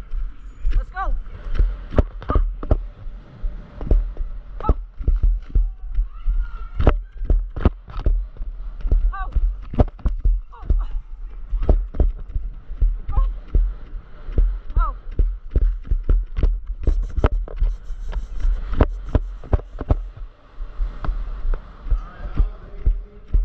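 Horse galloping on arena ground during a barrel run: hoofbeats thud irregularly, two or three a second, over a constant low rumble, with a few short yells now and then.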